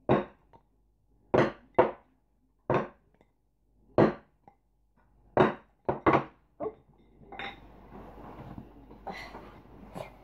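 Wooden rākau sticks clacking in the hands as they are tapped and flipped: about nine sharp clacks at uneven spacing, some in quick pairs, then faint rustling for the last few seconds.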